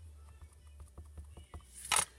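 A clear acrylic stamp block tapped again and again on an ink pad to ink the stamp: light, quick taps, several a second, then a short hiss near the end.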